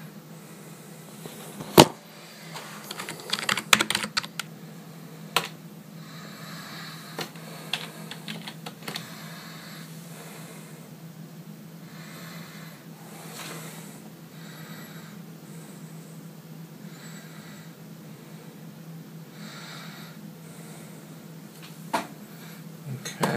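Typing on a computer keyboard: irregular keystroke clicks, with one loud keystroke about two seconds in and busy runs of keys in the first ten seconds, thinning out later. A steady low hum runs underneath.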